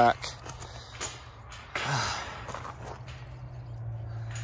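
Wire-panel ranch gate being shut, with a few light metal clinks in the first second, followed about two seconds in by a short breathy rush.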